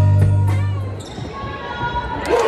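Pep band with electric guitar and bass holding a loud final chord that dies away about a second in, leaving quieter, thinner band sound.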